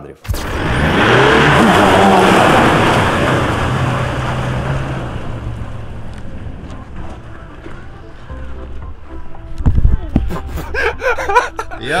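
Pickup truck driving past on a dirt road; its engine and tyre noise is loud at first, then fades as it pulls away. A low thump follows near the end.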